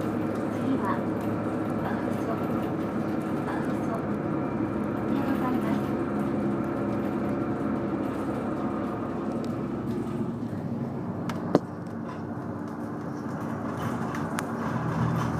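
Steady engine hum and road noise inside a moving route bus's cabin. A single sharp click stands out late on, after which the sound drops slightly.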